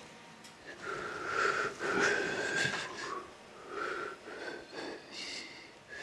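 A man's breathy wheezing and humming noises through the nose and throat, coming in a run of short spells under a second each.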